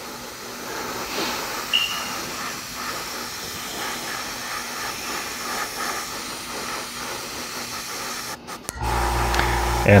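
Airbrush spraying black primer with the compressor set to about 25 psi: a steady hiss of air and atomised paint. The hiss cuts off about eight and a half seconds in, and a low hum comes in just after.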